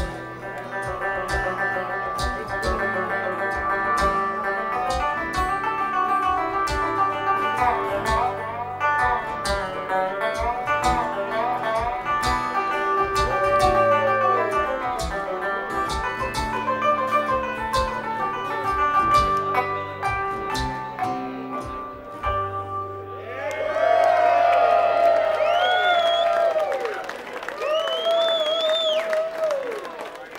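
Live bluegrass on banjo, guitar and string bass, picked with no singing. The tune ends about two-thirds of the way through on a held low bass note, and the crowd then cheers and whoops.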